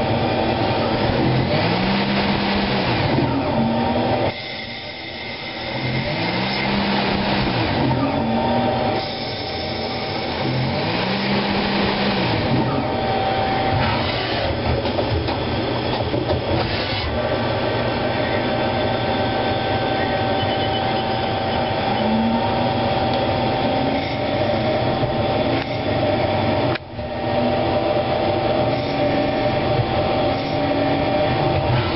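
CNC lathe running, turning a Delrin bar: steady machine noise with a whine that rises and falls in pitch three times in the first half. There is a quieter spell about four seconds in and a brief drop near the end.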